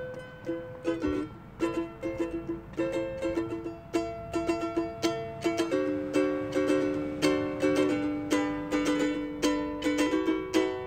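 Solo ukulele strumming chords in a steady rhythm, an instrumental passage with no singing.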